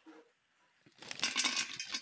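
Dry soya chunks poured into a metal bowl, a dense clattering rattle of many small hard pieces starting about a second in and running for over a second.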